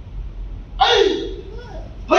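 Karate students shouting a kiai together with a technique, once, about a second in: a short loud "hey" that falls in pitch and trails off in the hall.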